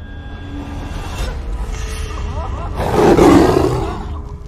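A tiger roars once, a film sound effect, starting near three seconds in and lasting about a second. It is the loudest sound, over a steady low rumble.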